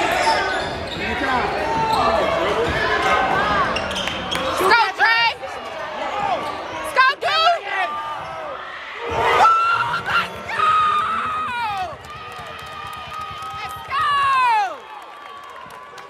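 Basketball game play on a hardwood gym floor: sneakers squeaking sharply several times and a ball bouncing, over steady crowd voices.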